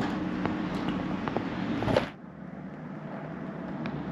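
Road traffic on the street outside, a steady rushing noise with a low hum, cut off suddenly about halfway through. After it there is quieter room tone.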